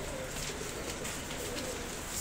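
Teddy pigeons cooing, several low coos following one another.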